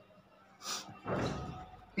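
A short hiss, then about a second in a dull thump that fades away over most of a second.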